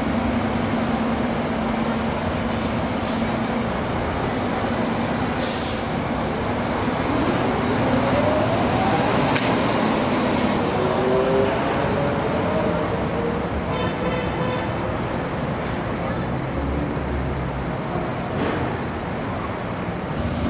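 Steady road traffic and idling vehicle engines, with a low hum through the first several seconds and an engine rising in pitch about eight seconds in. A short high chirp sounds about fourteen seconds in.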